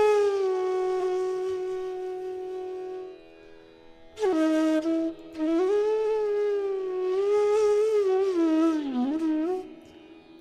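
Bansuri (Indian bamboo flute) playing a melody in Raag Des. A long held note sinks slightly in pitch and fades to a short pause about three seconds in. A new phrase then enters, with notes that slide and bend into one another, dipping near the end.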